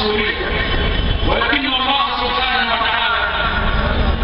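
A man's voice speaking through a microphone and public-address system, loud and reverberant over a steady hum of hall noise.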